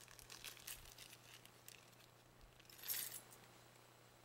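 Small metal charms clinking faintly as a package of them is opened and handled, with a brief louder jingle of metal about three seconds in.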